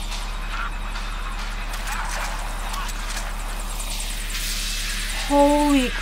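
A helicopter's rotor beat from a TV episode's soundtrack, steady and even. Near the end a woman gives a loud exclamation that falls in pitch.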